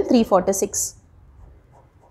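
A woman's voice finishing a spoken number, then a ballpoint pen writing faintly on notebook paper.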